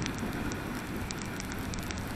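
Rain ticking irregularly close to the camera over a steady rush of wind and tyre noise on a wet road while riding a motorcycle.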